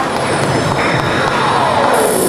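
Audience applauding in a hall, with a whistling tone gliding steadily down in pitch through the second half.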